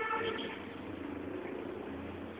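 A motor engine droning steadily, with a higher whine over it in the first half second.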